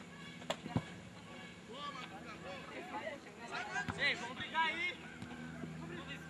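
Two sharp knocks of a football being kicked in quick succession about half a second in, then distant, indistinct shouting from players on the pitch, loudest about four seconds in.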